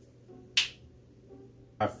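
A single sharp finger snap about half a second in, otherwise near quiet.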